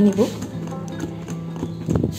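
Wire whisk stirring thick cake batter in a ceramic bowl, with light irregular clicks of the wires against the bowl and one sharper knock near the end, over background music.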